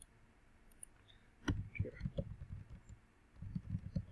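Computer keyboard typing: two short runs of quick keystrokes, one about a second and a half in and one near the end.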